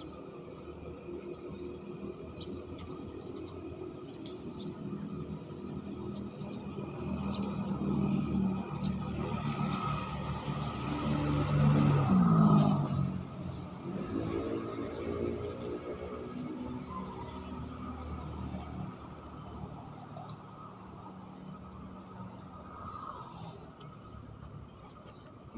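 A motor vehicle crossing the concrete road bridge overhead: the engine and tyre sound builds, peaks about halfway through with a quick shift in pitch as it passes, then fades away.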